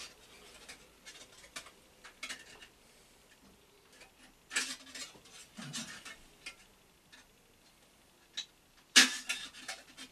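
Scattered small clicks, scrapes and rustles of hands working at the head of a round column mill drill, with one sharp click about nine seconds in.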